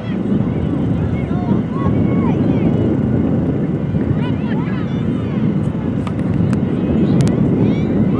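Wind buffeting the microphone in a steady low rumble, with distant voices of players calling out across the field.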